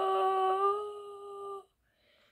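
A girl's long, drawn-out wail of "no", held on one steady pitch, fading and breaking off about one and a half seconds in: a cry of dismay.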